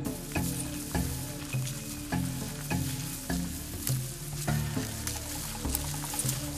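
Footsteps of people walking through tall dry grass and brush: regular crunches a little under two a second over a steady rustle of stems brushing against legs.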